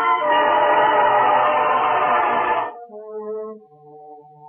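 Loud orchestral music bridge that breaks off abruptly about two-thirds of the way through, leaving soft, held low notes on wind instruments.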